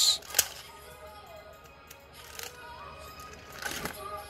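A 3x3 puzzle cube being turned by hand: sharp plastic clicks of the layers turning, two loud ones right at the start, then softer turning swishes about two and a half seconds in and near the end.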